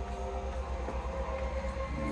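A low, rapidly pulsing rumble, with faint music over it.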